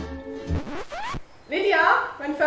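Slide-guitar music that ends about halfway through in a few quick rising glides, followed by a voice starting near the end.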